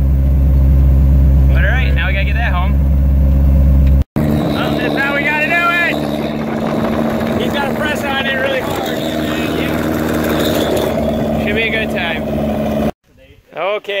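Car engine running and road noise heard from inside the cabin while driving, with men talking over it. It cuts off suddenly about a second before the end.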